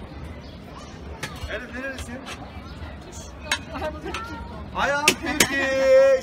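Voices of people talking, with a few sharp metal clinks from a Turkish Maraş ice-cream vendor's long metal paddle striking the steel tubs of dondurma. A loud, drawn-out voice comes near the end.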